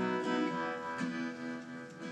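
Collings acoustic guitar playing soft chords that ring and fade, with a fresh chord struck about a second in.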